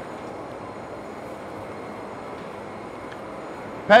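Steady background noise of a dairy processing plant's machinery and air handling, with a faint tick or two near the end.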